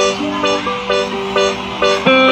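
Upbeat dance music: a short pitched chord repeating about twice a second over a steady lower line.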